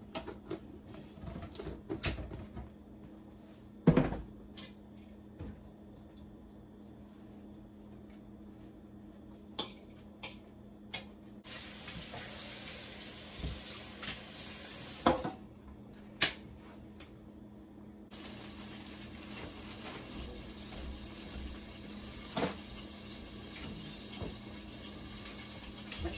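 Kitchen sink tap running water from about a third of the way in, with scattered knocks and clatters of containers and dishes being handled; the loudest knock comes about four seconds in.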